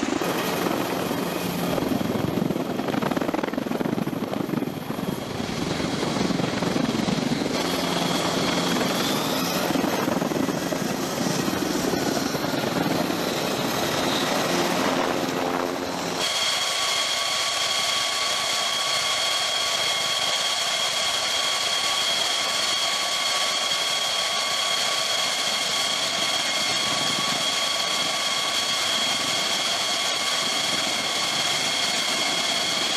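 V-22 Osprey tiltrotor's rotor and turboshaft engine noise as it lifts off the flight deck and flies away, loud and rumbling. About halfway through it cuts abruptly to a steady jet engine whine at idle, with several high steady tones and little rumble.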